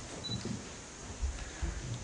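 Quiet hall room tone with a few soft, short low thumps scattered through it.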